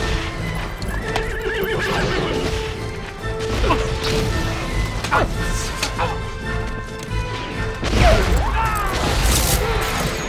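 Horses neighing and hooves clattering over film score music, with the loudest whinny about eight seconds in.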